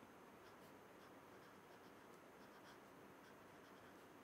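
Felt-tip marker writing on paper: faint short scratches of the pen strokes over a steady background hiss.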